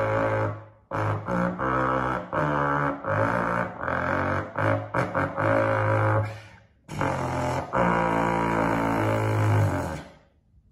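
A vocal beatbox routine built on pitched bass notes that change every half second or so. Short pauses break it about a second in and just before seven seconds in.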